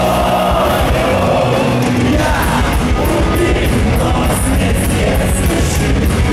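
Power metal band playing live at full volume through an arena PA: distorted electric guitar and drums under a male lead vocal sung into a handheld microphone.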